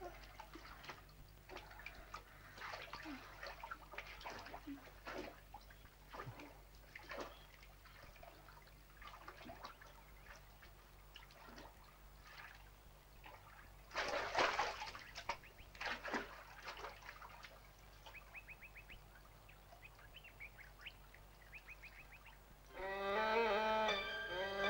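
Water splashing and sloshing as people bathe chest-deep in a river pool, in irregular small splashes with a louder burst of splashing about fourteen to seventeen seconds in. Music comes in just before the end.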